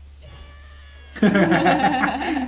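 A man and a woman bursting into loud laughter about a second in.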